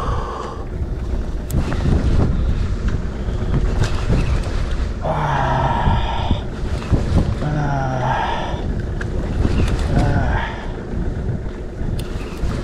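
Wind buffeting the microphone with a steady low rumble over open water, and a man's voice giving two drawn-out cries of effort around the middle while he fights a strong hooked fish on a bent rod.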